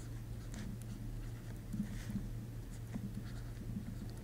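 Faint scratching strokes of a stylus writing on a tablet surface, drawing in short strokes, over a steady low electrical hum.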